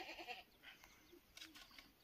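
Near silence, with a few faint, short animal calls and light clicks.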